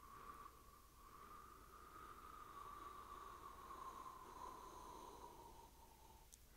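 A long, slow, faint exhale by a person breathing out on cue in a paced breathing exercise, lasting about six seconds. It carries a thin, steady whistle-like tone that sinks slightly in pitch and stops near the end.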